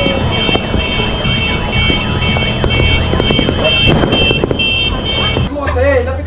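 Fireworks popping and crackling, with an electronic alarm sounding over them: a high warbling tone, then rapid repeated beeps, until it stops abruptly near the end.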